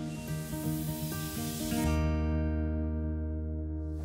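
Closing background music: a run of short pitched notes over a high hiss that cuts off about two seconds in, as the music lands on a deep, sustained final chord that rings on.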